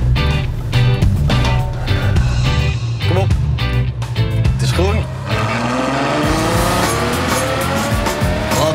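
Background music with a steady beat, over which, from about five seconds in, a Ferrari FF's 6.3-litre V12 accelerates hard from a standstill, its pitch rising steadily.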